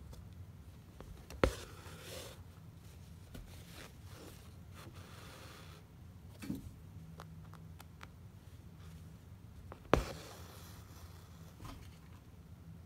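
Hand embroidery: a needle and floss worked through fabric stretched taut in an embroidery hoop. There are two sharp clicks, about a second and a half in and near the end, each followed by a short rasp of thread being drawn through the fabric, with soft rubbing of hand on cloth in between.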